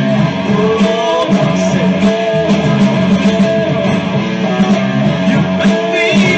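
EVH Wolfgang Standard electric guitar playing a rock part through an amp, sustained notes with string bends rising in pitch about half a second to a second in.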